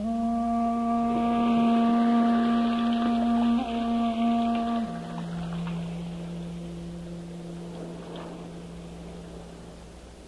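Shakuhachi (Japanese bamboo flute) holding a long, low note that swells after it begins, then stepping down to a lower note about five seconds in, which slowly fades.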